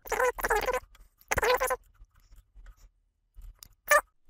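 Fast-forwarded speech, garbled into two short bursts in the first two seconds, with a brief blip just before the end.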